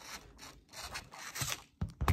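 Handling noise from a phone camera being set down and adjusted on a desk: a run of irregular rubbing and scraping sounds, with a low bump just before the end.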